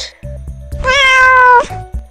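A domestic cat meowing once, a single drawn-out meow of just under a second with a slightly falling pitch, about a second in.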